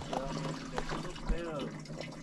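Running water trickling steadily, with a faint voice briefly about a second and a half in.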